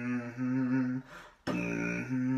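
A beatboxer humming low, held notes. About one and a half seconds in they break off for a sharp percussive hit, and the humming then resumes.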